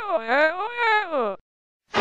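A single voice-like wail whose pitch glides smoothly down, back up and down again, cutting off about a second and a half in.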